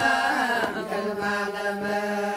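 Beta Israel (Ethiopian Jewish) liturgical chant. The chanted line moves in pitch, then about a second in it settles onto one long held note.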